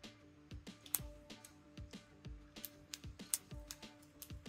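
Quiet background music with a steady beat and held tones. Over it come small, irregular clicks of stiff printed-plastic joints as the legs and claws of a 3D-printed articulated crab are flexed by hand.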